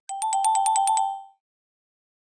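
A bright electronic chime sound effect: a rapid trill of about ten dings alternating between two close notes, like a phone ringtone, fading out after just over a second.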